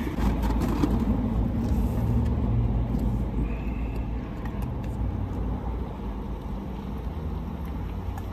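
Steady low engine hum heard from inside a car's cabin, with a few faint clicks in the first second.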